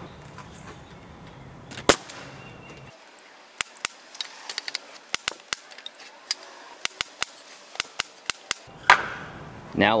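Pneumatic nail gun firing a nail into a pine two-by-four: one loud sharp shot about two seconds in. It is followed by a string of about fifteen quieter, sharp clicks at uneven spacing over the next five seconds.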